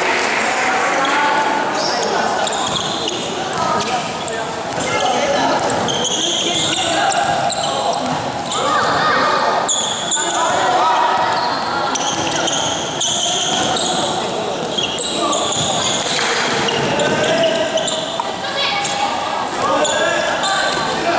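Basketball game sounds in a large gym: a ball being dribbled under overlapping shouts and calls from players and onlookers, with short high squeaks of sneakers on the court.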